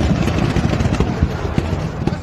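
Lithium battery cells bursting in a factory fire: a dense, rapid crackle of explosions like machine-gun fire, easing slightly toward the end.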